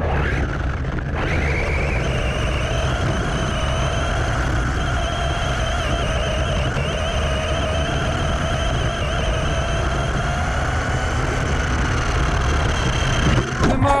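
Brushless motors of a 5-inch FPV freestyle quadcopter (EMAX RS2205S 2300KV motors spinning DAL Cyclone 5046 props) whining as it flies, the pitch rising in the first second or two as it spools up and lifts off, then holding fairly steady with a low rumble underneath.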